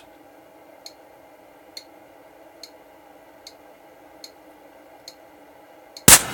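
Bench power supply's cooling fan running with a steady hum, while a light tick repeats evenly, a little faster than once a second, six times.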